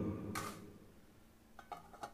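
Aluminium pot lid set onto a large aluminium pan: a few faint metallic clicks with brief ringing near the end, after a short quiet stretch.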